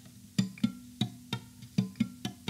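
Acoustic guitar strummed muted on the D, G, B and high E strings, the fretting hand damping them so each stroke is a short percussive chop. There are about six quick strokes over a low note ringing underneath.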